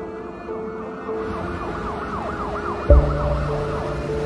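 Ambulance siren wailing in a fast yelp, rising and falling several times a second from about a second in, over sustained string music of a film score. About three seconds in a deep boom hits and a new low chord is held.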